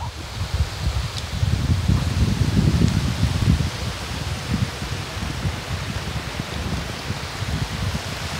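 Wind buffeting a phone's microphone: an uneven, gusty low rumble over a steady hiss.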